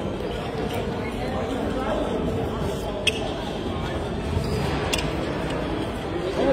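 Indistinct chatter of many voices echoing in a gymnasium, with two short sharp knocks, about three and five seconds in.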